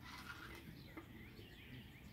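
Near silence with a few faint, short bird chirps in the background.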